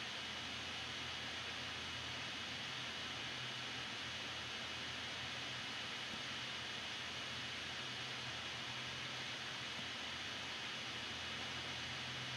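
Steady, faint hiss of a voice recording's background noise with a low electrical hum underneath; nothing else happens.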